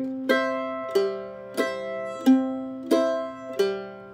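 Apitius Vanguard F5 mandolin played in a guitar-style boom-chuck pattern on an open C chord shape: single bass notes on the root and fifth alternate with strummed chords on the higher strings. There are six evenly spaced strokes, about one every two-thirds of a second, and each one rings on as it sustains.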